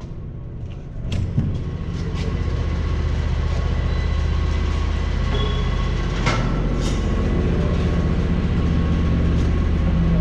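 Low wind rumble across the camera microphone, with bicycle rolling noise, growing louder over the first few seconds as the bike picks up speed and then holding steady. There are a couple of knocks about a second in and a sharp click about six seconds in.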